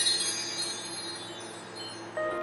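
High ringing chime tones in a musical intro, sustained and slowly dying away.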